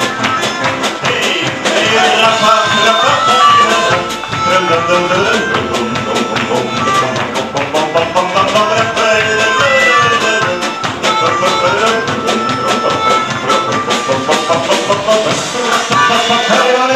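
A small acoustic band plays an instrumental passage: a melodica carries a stepping melody over strummed acoustic guitar and upright double bass, with a steady rhythmic pulse.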